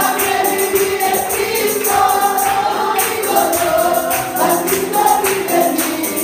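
A Spanish worship song sung live into a microphone, with other voices singing along and a steady jingling percussion beat.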